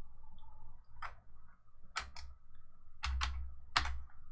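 Computer keyboard keystrokes: about six separate sharp clicks at uneven intervals as a search term is typed, over a faint low hum.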